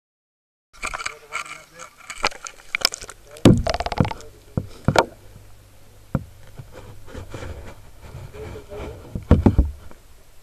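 Knocks and clicks from a camera being handled and dipped into a plastic tub of water, with a quick rattle of clicks about three and a half seconds in, over muffled water noise.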